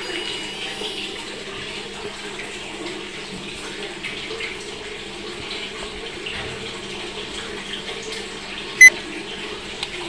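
Steady rushing, water-like noise, then a single short, loud electronic beep near the end.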